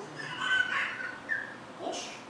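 A high-pitched animal whine lasting about a second.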